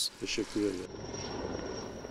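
A few faint words from a man's voice, then from about a second in a steady aircraft hum with a thin, constant high whine.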